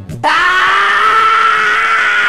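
A woman's voice letting out one long, loud scream held at a steady pitch, starting about a quarter second in as the music stops.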